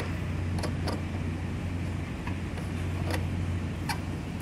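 Steady low machinery drone, with a few light clicks as the metal cover of a pressure transmitter is handled and screwed back on.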